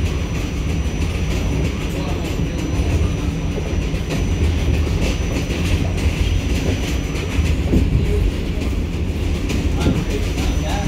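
An R46 New York City subway car heard from inside while running at speed: a steady low rumble of wheels and running gear, with repeated clacks over rail joints and a thin high whine that drops out twice.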